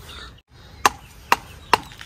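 Machete chopping at bamboo: three sharp strikes about half a second apart.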